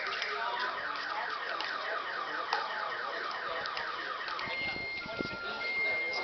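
An electronic alarm sounding a fast, evenly repeating rising warble, then switching about four and a half seconds in to steady high and low tones that alternate on and off.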